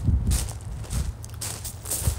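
Footsteps over dry grass and leaves: a few steps about half a second apart, over a low steady rumble of wind on the microphone.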